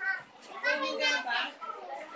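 A child's voice talking, high-pitched and indistinct.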